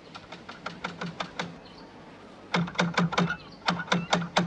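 Knuckles knocking on a door: a run of light, quick taps, then two louder rounds of knocking in the second half.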